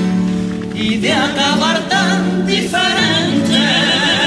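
Cádiz carnival comparsa choir singing in harmony. The voices, with strong vibrato, come in about a second in over a held chord.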